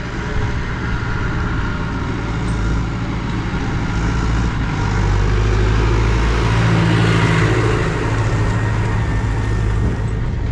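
Massey Ferguson tractor towing an Abbey slurry tanker along a gravel farm lane: the engine runs steadily with tyre noise as it approaches, passes close by about six seconds in, and pulls away. The sound swells as it goes past and then eases.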